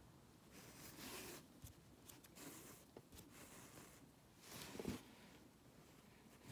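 Faint rasping swishes of embroidery thread being drawn through cotton fabric and through the coiled wraps of a bullion knot, with a few light needle clicks. There are several swishes, and the longest and loudest comes near the end.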